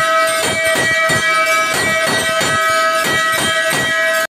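A temple bell rung continuously during a puja, struck about three times a second over its steady, sustained ring.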